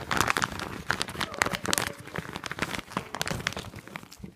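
Clear plastic packaging crinkling as hands handle and pull at it: a dense run of crackles that thins out near the end.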